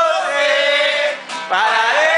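A group of men singing loudly together in long, drawn-out notes, with a brief break about a second and a half in.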